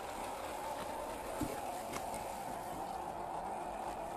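1/10-scale RC Land Cruiser crawler's electric motor and gearbox whining steadily as it drives through shallow muddy water, with water splashing around the tyres.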